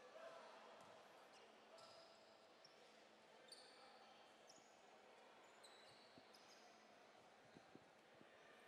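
Faint sports-hall ambience: low crowd murmur with a few brief high sneaker squeaks on the hardwood court, and a couple of soft basketball bounces near the end.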